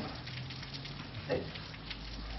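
Steady crackling hiss of background recording noise with a faint low hum during a pause in a lecture, broken by the single spoken word "right?" about a second in.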